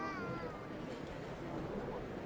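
Murmur of a street crowd, with a short, high meow-like cry that rises and then falls in pitch during the first half-second or so.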